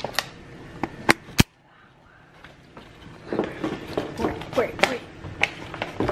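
A bag of self-rising flour being handled: a few sharp clicks in the first second and a half. Then about a second of near silence, and quiet voices from about three seconds in.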